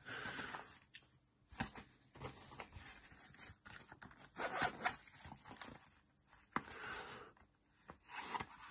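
Zipper on a black fabric lock-pick case being drawn open in several short pulls, with rustling of the case and one sharp click late on.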